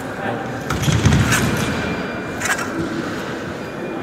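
Indistinct background voices echoing in a large sports hall, with a few sharp clicks or knocks, one about a second in and another around two and a half seconds.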